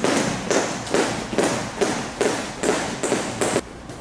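Jump ropes slapping the floor in a steady skipping rhythm, about two and a half strikes a second, cutting off suddenly near the end.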